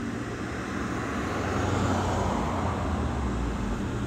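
Steady background rumble and hiss with a low hum, swelling a little in the middle; no speech.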